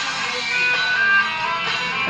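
A Malaysian rock band's song playing, with the electric guitar out front and short high held notes over the band.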